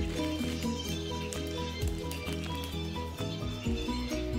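Background music: held melody notes changing in pitch over a steady bass line.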